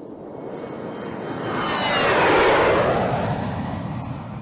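Whoosh sound effect that swells to a peak about halfway through and then fades, with whistling tones falling in pitch, like a jet flying past.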